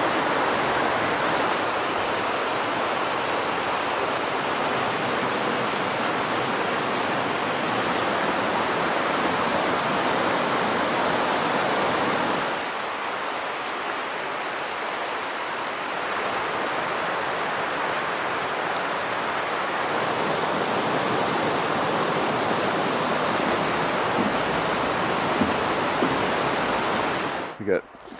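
Goshen Prong, a rocky mountain stream, rushing over rapids and small cascades. The water makes a steady rush that turns a little softer about halfway through.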